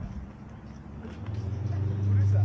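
A motor vehicle's engine, a low steady hum that swells louder from about a second in as it draws near, over general street background.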